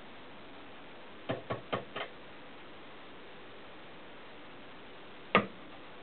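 Sharp metal clicks of pliers working a braided-steel brake-line fitting clamped in a bench vise: four quick clicks a little over a second in, then a single louder click near the end.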